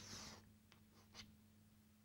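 Chalk scratching on a blackboard: a faint stroke trailing off at the start, then a few short taps and strokes around a second in, over a low steady hum.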